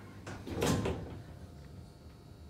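Passenger lift's sliding car doors closing: one short rumble of about half a second.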